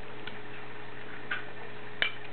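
Toy cars being handled by a baby: a faint tick about a quarter second in and a slightly louder small click just past halfway, over a steady low background hum.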